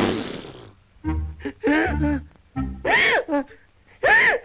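Cartoon soundtrack: a hissing swish that fades out in the first second, then three short, buzzy vocal calls from the animated characters, each rising and falling in pitch, over the orchestral score.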